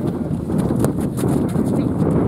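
Sounds of a soccer game on a dirt pitch: steady wind rumble on the microphone, with a quick run of light taps from play on the field about half a second to one and a half seconds in.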